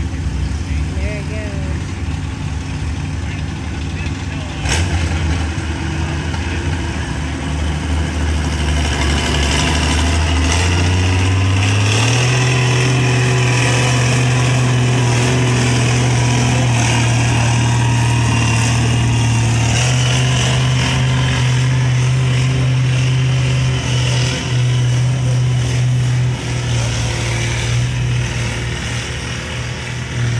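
Oliver 77 Row Crop tractor's six-cylinder engine pulling a weight-transfer sled under load. It runs steadily at a lower pitch, then climbs in pitch and gets louder about ten to twelve seconds in, holds there, and eases off a little near the end.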